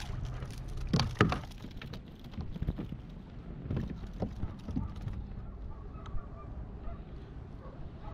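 Splashing and sharp knocks as a small bicuda (barracuda) is lifted from the water onto a kayak, the loudest knocks about a second in, over a steady low rumble.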